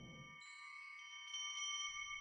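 Soft chimes ringing as a music cue, several high tones held together, with more joining about half a second in.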